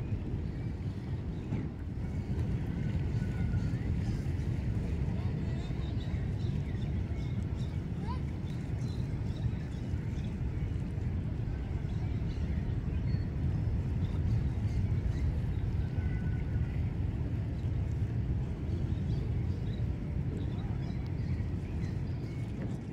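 Steady low rumble of wind buffeting the microphone outdoors, with faint distant voices beneath it.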